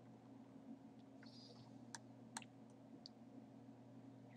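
Near silence: a steady low hum of room tone with a few faint, sharp clicks scattered through it.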